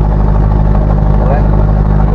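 A vehicle engine running at a steady speed while driving, a constant low hum with road noise and no change in pitch.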